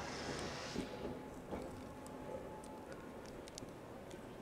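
A man chewing a mouthful of toasted bagel with salmon and cream cheese: faint soft mouth sounds and small clicks over a low, steady background hum.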